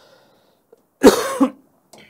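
A man coughs once about a second in, a short, loud burst lasting about half a second.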